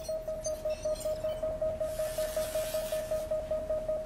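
A steady electronic tone, pulsing about four times a second, from a laser explosives-detection analysis display. A soft hiss rises under it for about a second and a half in the middle.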